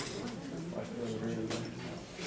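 Indistinct murmuring voices in a lecture room, with one sharp knock about one and a half seconds in.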